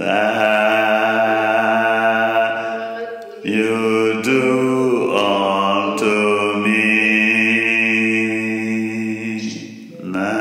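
Chanting in long held notes, each sustained for a few seconds. The pitch shifts about three and a half seconds in and again near seven seconds.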